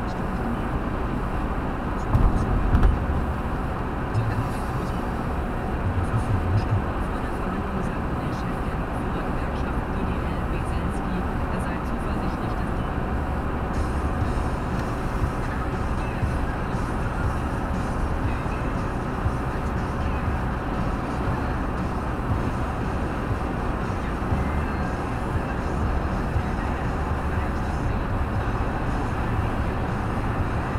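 Steady road and tyre noise with engine hum inside a car cabin at motorway speed. Brief low thumps come about two seconds in and again around six seconds.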